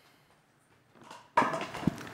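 Near silence, then about a second and a half in a sudden burst of rustling noise with a few knocks: a microphone being handled or switched on just before someone speaks into it.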